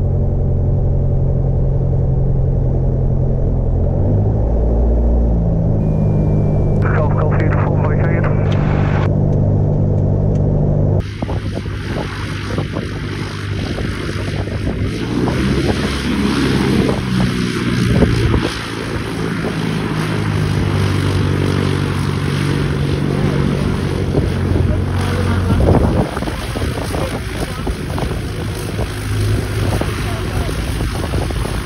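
Piper Warrior II's four-cylinder Lycoming engine and propeller running at low power during the landing roll and taxi, heard inside the cockpit as a steady low drone that shifts in pitch a few seconds in. About 11 s in the sound cuts to the same aircraft taxiing, heard from outside, with a much noisier, hissier engine and propeller sound.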